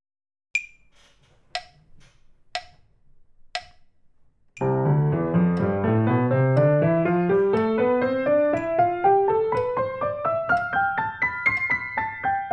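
Metronome at 60 beats a minute giving four count-in clicks a second apart, then a piano playing the C major scale in both hands over four octaves in sixteenth notes, four notes to each click. The run climbs steadily and turns back down near the end, with the metronome still clicking.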